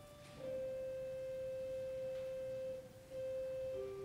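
Slow instrumental music: a single melody line of long sustained notes, one held for more than two seconds before the tune moves on with shorter notes near the end.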